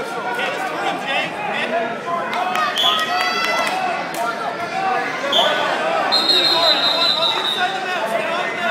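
Crowd of spectators in a gym hall talking and calling out, many voices overlapping. Near the end a steady high-pitched tone is held for over a second.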